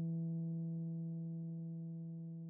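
The song's final keyboard note left ringing on its own, one sustained low tone slowly dying away.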